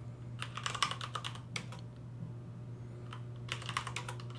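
Computer keyboard typing: a quick run of keystrokes about half a second in, a lone keystroke a little later, then another run of keystrokes near the end.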